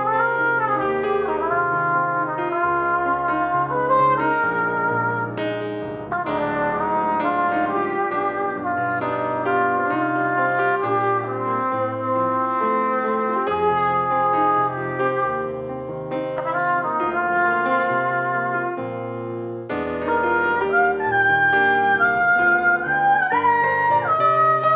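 Trumpet playing a slow hymn melody in long held notes with vibrato, over sustained chords on a Nord Stage 3 keyboard; the playing grows louder near the end.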